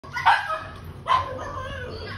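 Pug puppy barking twice, two short barks less than a second apart.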